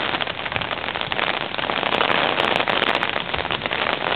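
Rain falling steadily: a dense, even hiss with a fine crackle of drops hitting.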